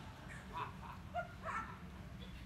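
Faint, scattered chuckles and murmurs from a seated audience after a joke, a few short bursts over low room hum.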